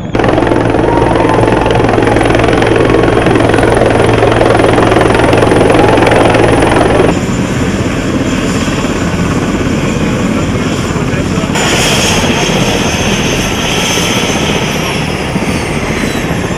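Helicopter rotor and turbine engines running loud with a steady low thrum while it comes in to land. About seven seconds in the sound cuts to the helicopter on the ground: a high turbine whine sits over the rotor noise and slowly drops in pitch near the end as the engines wind down.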